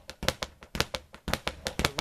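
Speed bag being punched in a steady basic rhythm with gloved hands: a rapid, even run of sharp raps, about five a second, as the leather bag rebounds off the wooden platform.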